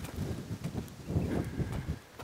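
Footsteps of work boots walking across dry, sandy dirt: a run of soft, irregular steps.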